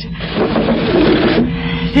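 Radio-drama sound effect of a window being slid open: a scraping slide lasting about a second. A steady low held note comes in just after it.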